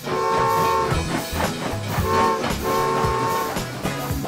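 Cartoon toy-train whistle tooting three long times over bouncy background music.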